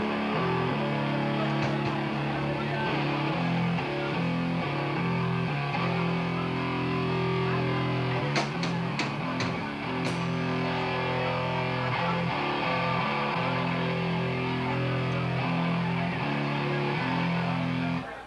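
Rock band playing live through amplifiers: distorted electric guitars holding heavy chords that change every second or so. A quick run of sharp hits comes about halfway through, and the music stops abruptly at the end.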